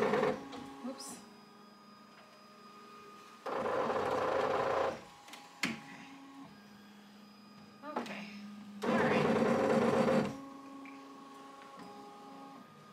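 Ricoma EM1010 ten-needle embroidery machine running a trace of the design outline: its hoop drive whirs in two bursts of about a second and a half each, about four seconds apart. A steady hum carries on between them.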